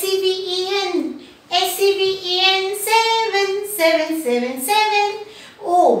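A woman singing a children's counting rhyme unaccompanied, in held notes that step up and down in pitch with short breaks between phrases.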